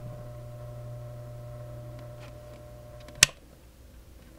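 Electric rotating display turntable's motor running with a very low, quiet, steady hum. There is one sharp click about three seconds in.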